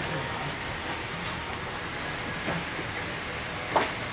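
Steady low mechanical rumble with hiss, and a single sharp click near the end.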